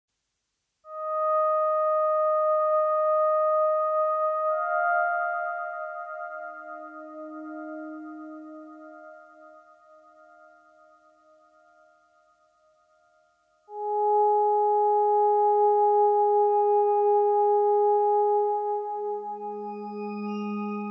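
Slow, sustained pure-toned synthesizer notes from an Elektron Digitone FM synth, played through a Hologram Microcosm effects pedal in its Mosaic mode, which chops the sound into tempo-synced micro-loops and adds reverb. A held note swells in about a second in, further notes layer over it and fade away almost to silence, then a new held chord comes in about two thirds of the way through.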